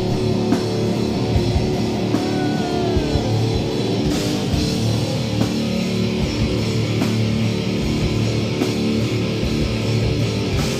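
Heavy metal band playing live: distorted electric guitar riffing over a full drum kit, in an instrumental passage without vocals.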